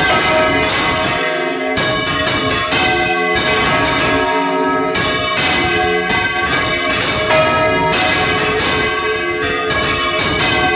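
Four church bells swinging full circle together in a Valencian-style general peal (volteig), heard close up from inside the belfry. Frequent overlapping strikes each leave a long ring, so the sound never drops away.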